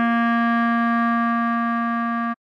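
Clarinet holding one long, steady note, the tune's final written C4, which sounds as concert B-flat below middle C.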